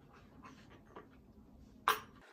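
Faint soft rustles and taps of leather pieces being handled on a cutting mat, then one sharp click just before the end.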